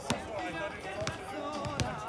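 A basketball dribbled on a hard outdoor court, bouncing a few times, with the loudest bounces near the start and near the end.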